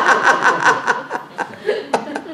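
A man laughing heartily, a quick, even run of laughs that is loud at first and dies away about a second in.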